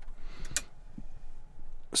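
Quiet room tone in a pause between sentences, with two faint, sharp clicks about half a second in.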